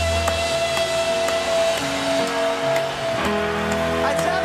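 Live rock ballad music with guitar and sustained chords that change every second or so.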